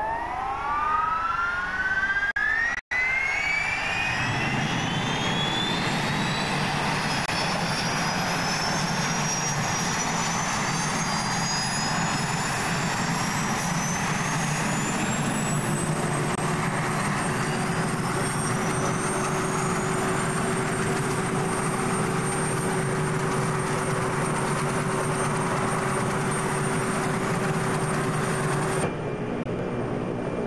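Turbine engines of a firefighting helicopter starting up: a whine climbs steadily in pitch for about fifteen seconds as the engines spool up and the rotor begins turning, then settles into a steady high whine with the rotor running. There is a brief dropout about three seconds in, and the sound cuts off abruptly about a second before the end.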